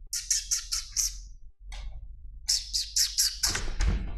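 A man making quick, sharp, high-pitched lip sounds through pursed lips, the way one calls a cat: a run of about six in the first second and another run of about six after a short pause past the middle.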